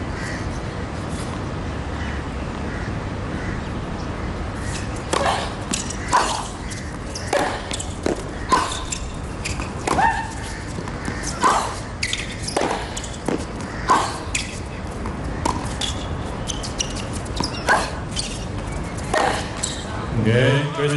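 Tennis rally: rackets hit the ball about once a second, beginning about five seconds in, and many hits come with a player's short grunt. Steady crowd and stadium ambience underneath.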